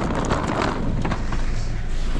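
A car engine running with a steady low hum under outdoor street noise.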